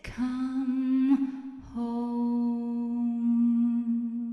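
A woman's voice humming two long held notes at the end of a song, the second beginning a little under two seconds in.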